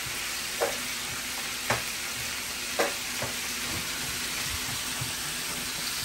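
Sweet potato fries frying in oil next to seasoned chicken in a cast-iron skillet: a steady sizzle, with four short clicks in the first few seconds.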